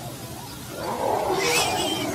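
A leopard growling, growing louder about a second in, with a higher cry near the end.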